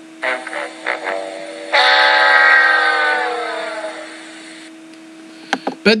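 A horn-like sound effect: a couple of short notes, then one long note that holds and slowly slides down in pitch as it fades, a comic letdown cue in the manner of a sad-trombone 'wah-wah'.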